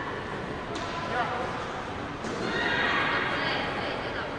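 High-pitched shouted voices, with a longer shrill yell from a little after two seconds in that lasts about a second.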